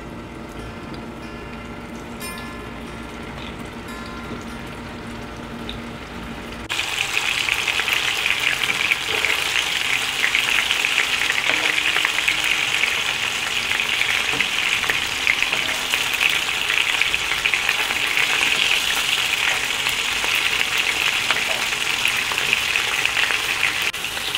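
Mutton kofta kababs shallow-frying in hot oil in a pan: a loud, steady sizzle that starts abruptly about a third of the way in and holds to the end. Before it there are only soft, steady tones.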